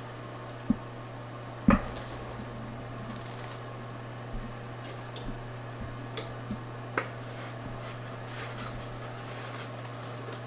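Thick cake batter being poured and scraped from a stainless steel mixing bowl into a metal bundt pan. Two sharp metal knocks come about one and two seconds in, the second the louder, followed by a few lighter taps and scrapes, over a steady low hum.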